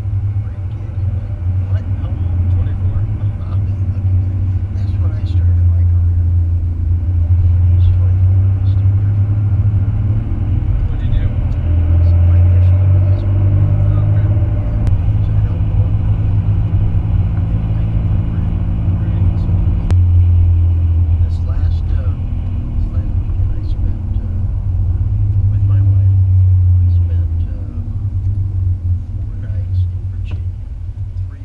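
Low, continuous drone of a Ford F-150 pickup on the move, heard from inside the cab, growing stronger and easing off several times.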